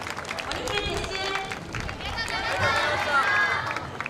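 Several people's voices talking, with scattered light clicks and steps as a group of dancers walks off a grass field.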